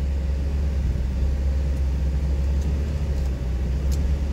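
Steady low rumble of a vehicle's engine and road noise heard from inside the cab while driving, with a faint steady hum above it.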